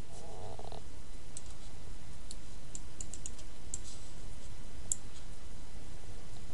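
A handful of faint, sharp computer-mouse clicks at uneven intervals, over a steady low hum.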